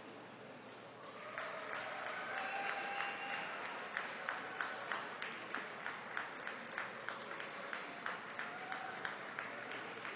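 Ringside spectators applauding, swelling about a second in, with individual claps standing out at about three a second, and a few voices calling out over it.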